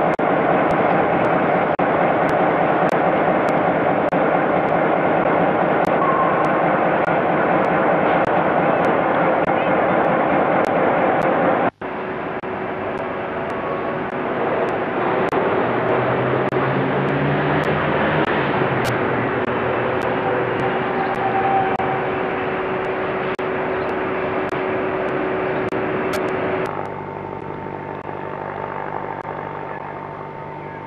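Steady loud noise from the Flying Scotsman, an LNER A3 Pacific steam locomotive, working through a rail yard. About twelve seconds in the sound breaks off sharply and gives way to a different steady railway noise, with a low engine-like drone that rises and falls for a few seconds. Near the end it drops to a quieter steady hum.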